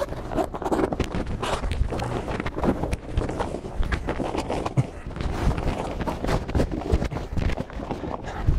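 Heavy grow-tent fabric with a reflective lining rustling and flapping as it is unfolded and spread out across a tile floor, with irregular knocks and footsteps as it is handled.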